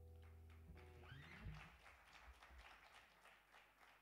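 The last strummed acoustic guitar chord rings on and dies away in the first second. It is followed by faint, scattered hand claps and a low thump about a second and a half in.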